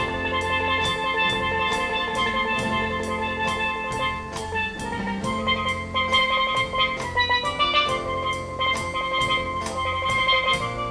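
A live church band plays instrumental music on drum kit, bass guitar, electric guitar and keyboard: a steady beat with cymbal strikes about twice a second under a bass line and sustained melody notes.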